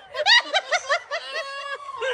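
A person laughing hard in a rapid string of high-pitched giggles, about seven a second, drawn out into one long held squeal near the end.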